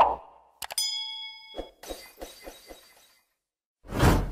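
Subscribe-button animation sound effects: a sharp mouse-click at the start, then two quick clicks and a bell ding that rings for about a second, followed by a quick run of about six small bell-like taps as the notification bell shakes, and a swish rising just at the end.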